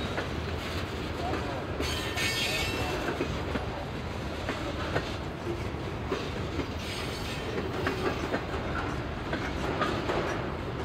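Freight train boxcars rolling past: a steady rumble of steel wheels on the rails with clicking over the rail joints, and a brief high-pitched wheel squeal about two seconds in.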